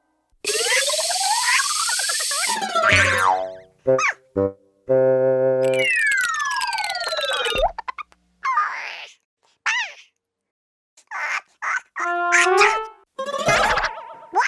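Cartoon sound effects: a spray hiss with a rising whistle for about two seconds, then a string of whistles sliding down in pitch, short boings and pops, and one more quick burst near the end.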